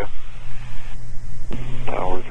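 Beechcraft Baron G58's twin Continental IO-550 piston engines and propellers droning steadily, heard inside the cockpit as a low, even hum. A voice begins near the end.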